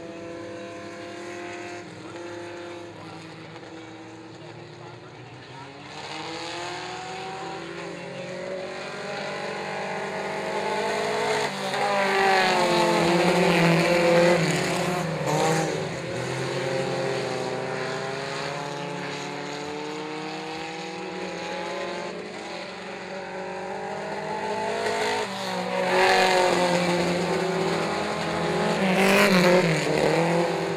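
Several mini stock race car engines at low, steady revs, then revving up and down in overlapping rising and falling tones as the cars pick up speed after a caution. They are loudest as cars pass close, about twelve seconds in and again near the end.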